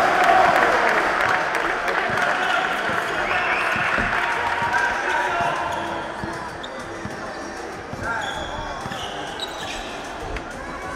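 Indoor basketball game: the ball bouncing on the court and occasional short high squeaks of sneakers, under the chatter and shouts of players and spectators in a large echoing gym. It is busier and louder in the first half, easing off from about six seconds in.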